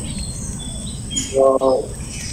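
Birds chirping in short, high notes over a steady low hiss, with a brief hum from a person's voice about one and a half seconds in.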